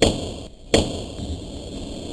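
Two sharp chopping impacts about three-quarters of a second apart, as an axe blade made from a motorcycle brake disc cuts through a water-filled plastic bottle, followed by a lower, steady noisy tail.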